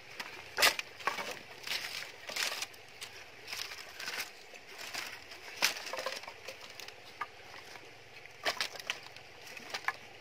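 Dry wooden sticks and split bamboo strips being set down and knocked against each other on river pebbles, making irregular clattering clicks and knocks, the loudest about half a second in.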